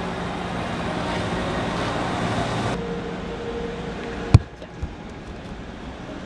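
Steady hum of a large roofed ballpark, which changes character about three seconds in. Then comes one sharp, loud smack of a baseball during practice, with a fainter knock about half a second later.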